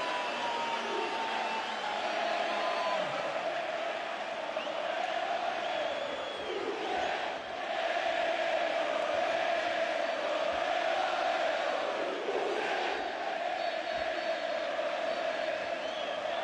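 Football stadium crowd chanting and singing together, a steady mass of voices carrying a wavering tune.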